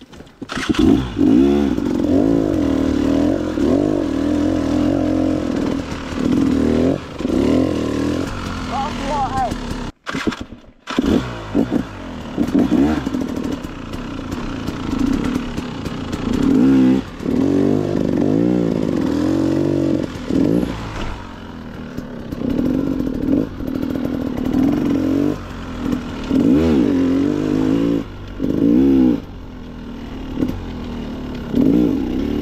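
Dirt bike engine revving up and down again and again as it is ridden along a trail, the pitch climbing and falling with throttle and gear changes. The sound drops out for about a second around a third of the way in.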